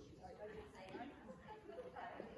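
Faint, indistinct voices talking.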